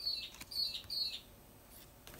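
A small bird chirping: a quick run of short, high chirps in the first second or so, each dipping in pitch at its end.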